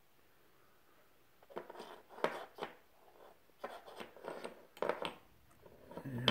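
Wooden chess pieces clicking and scraping against each other and the board as a cat paws at them. The sounds come in several short clusters of clicks, starting about a second and a half in.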